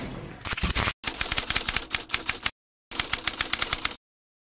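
Typewriter typing sound effect: rapid keystroke clicks, about ten a second, in three runs broken by dead-silent pauses.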